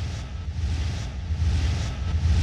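Electronic intro music: a deep low drone that slowly builds in loudness, with swishing swells repeating about twice a second.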